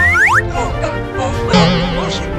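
Children's background music with cartoon sound effects: a quick rising boing-like slide right at the start, and a wobbling, warbling effect about one and a half seconds in.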